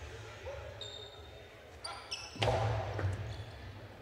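A hard jai-alai ball (pelota) bounced on the court floor: one sharp knock a little past halfway that rings on in the large hall for close to a second.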